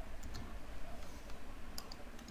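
A few faint clicks of a computer mouse and keyboard over a steady low hum. The clicks come as handwritten working on a screen is selected and deleted.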